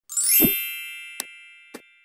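Channel logo intro sting: a quick rising sweep ending in a low hit, then a bright chime that rings on and slowly fades. Two short clicks come in the second half, timed with a subscribe button and bell animation.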